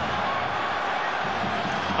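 Steady stadium crowd noise in a football ground, heard through a TV broadcast.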